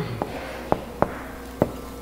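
Marker writing on a whiteboard: about four short, light clicks as the tip taps the board, over a faint room hum.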